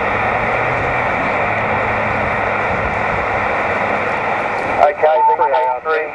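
Steady hiss of band noise from a portable 2 m SSB transceiver's speaker, held within the radio's narrow voice passband. A voice comes through the radio about five seconds in.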